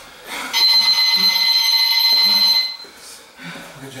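Electronic round timer sounding one steady buzzer tone for a little over two seconds, signalling the end of the timed grappling round.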